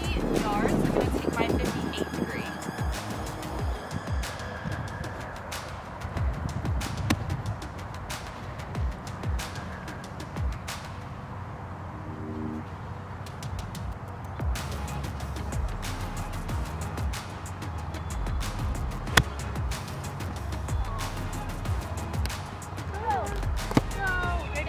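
Background music over a low rumble, with one sharp crack about nineteen seconds in: a golf club striking the ball off the fairway.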